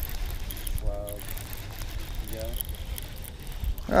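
Steady low rumble of wind on the camera microphone, with two short snatches of faint distant speech, about one second in and again midway.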